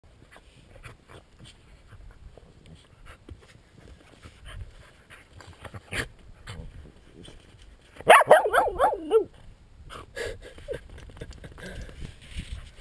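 A dog rolling on its back in snow, with faint scuffing and crunching. About eight seconds in the dog gives a loud vocal sound lasting about a second, wavering rapidly up and down in pitch.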